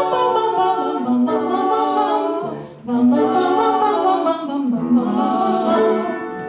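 Three female voices singing unaccompanied in close harmony, in two held phrases with a brief breath break near the middle.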